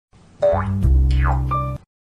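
Short cartoon-style intro sound effect: a pitch glide rising, then a second glide falling from high to low, over a low held chord, with a steady higher tone near the end, cutting off suddenly just before two seconds.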